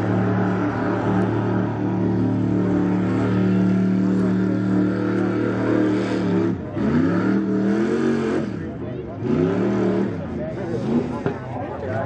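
Green mud buggy's engine held at steady high revs, then, about six and a half seconds in, dropping off and revved up and down several times as it drives and turns through the dirt.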